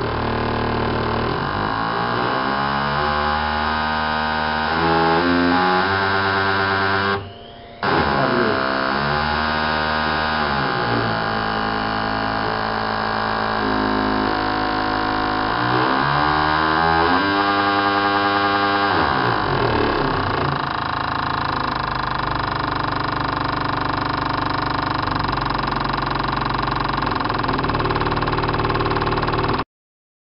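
High-flow fuel injectors (500 lb/hr) pulsing on an injector test bench, a rapid buzz whose pitch steps and glides up and down as the pulse rate is changed. It drops out briefly about seven seconds in, then resumes, and cuts off just before the end.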